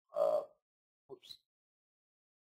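Mostly dead silence. A man's voice makes one short sound in the first half-second, and a faint brief sound follows about a second in.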